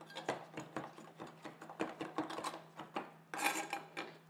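Chef's knife chopping fresh coriander on a wooden board: a quick, irregular run of blade taps against the wood, with a longer scrape near the end as the chopped herb is gathered on the blade.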